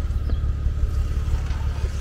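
Tow vehicle's engine idling steadily, a low even hum.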